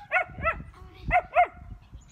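A dog barking in about five short, high-pitched barks, two close together at the start, one in the middle and two more past the first second.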